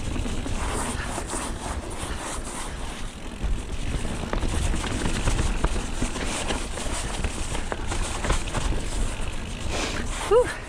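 Mountain bike rolling fast down a dirt trail: tyres rumbling over earth and leaves, with frequent rattles and knocks from the bike over bumps and roots, and wind buffeting the microphone.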